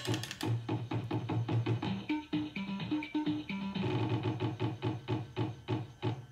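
Electronic game tune from a fruit slot machine while a round is played: short beeping notes over a quick, even ticking beat as its lights chase around the board.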